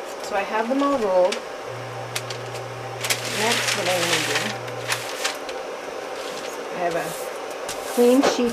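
Indistinct low voice in short snatches, over a steady low hum lasting about three seconds, with a brief rustling scrape in the middle as wax candles and paper are handled on a workbench.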